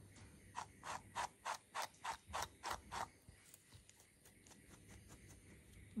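Faint strokes of a small slicker brush through a Jersey Wooly rabbit's matted foot fur: about ten quick brush strokes, roughly four a second, then only faint scattered ticks in the second half.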